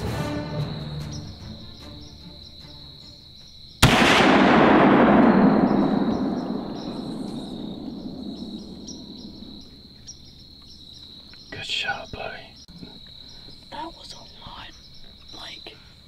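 A single muzzleloader rifle shot about four seconds in: a sharp crack followed by a long rolling echo that dies away over several seconds. Low voices follow near the end.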